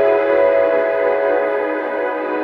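Intro of a melodic house track: a sustained synthesizer chord held steadily, with no beat.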